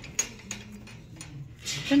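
A few light clicks and knocks as a twine-strung bunch of glossy ornamental chili peppers is handled, the peppers tapping against each other, over a steady low store hum.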